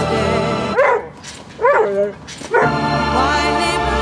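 Boxer dog giving two or three short whines that rise and fall in pitch, heard in a break of about two seconds in the music; the song carries on before and after.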